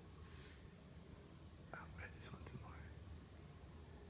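Near silence: faint whispering, a little past the middle, over a low steady hum.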